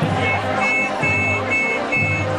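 Street crowd noise with a run of short, high two-note beeps, repeating about twice a second, over a low pulsing beat.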